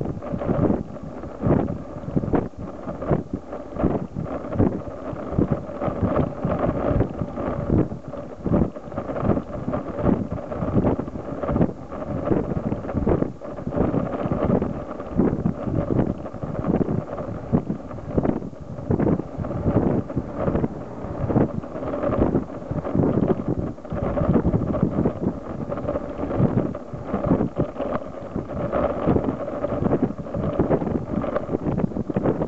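Wind buffeting the microphone of a camera mounted on the back of a moving bicycle, with frequent irregular knocks and rattles as the ride's vibrations jolt the tripod mount.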